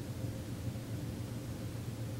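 Steady low hum with a faint even hiss and no other events: the background noise of a quiet room.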